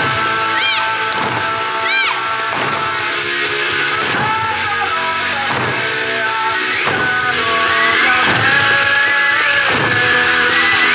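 Okinawan eisa dance music with singing, and the dancers' barrel drums struck in time, a stroke about once a second.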